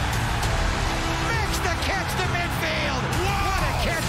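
Dramatic film-score music under a stadium crowd cheering, with many fans whooping and yelling from about a second in as a completed pass plays out.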